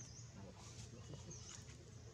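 Faint short wavering squeaks from a macaque, with a few soft clicks. A high chirping call repeats in the background about every second and a half.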